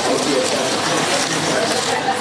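Indistinct chatter of several people in the background, with a steady noisy haze and no clear single voice.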